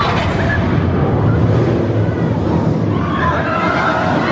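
SheiKra steel dive coaster train running along its track, a steady, loud rush of rumbling noise.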